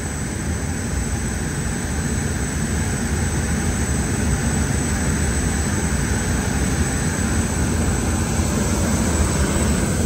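Steady jet aircraft noise with a thin high whine, gradually getting louder.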